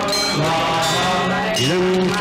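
Devotional song: a held, chant-like vocal line over accompaniment, its pitch sliding up near the end.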